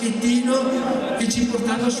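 A man speaking Italian into a microphone, giving a continuous speech.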